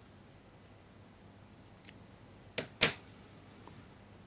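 Fine fly-tying scissors snipping twice in quick succession, trimming the waste ends of the bronze mallard wing fibres. The two sharp snips come a little past halfway, a quarter of a second apart.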